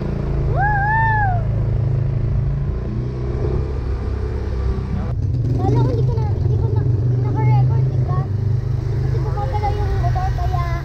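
Motor scooter riding along, its engine hum mixed with a heavy, steady wind rumble on the camera's microphone. A voice calls out once with a rising-then-falling pitch about a second in, and scattered talk runs over the riding noise in the second half.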